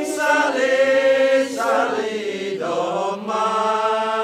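Vocal chanting in long, held notes that bend in pitch, with a new note taken up about three seconds in.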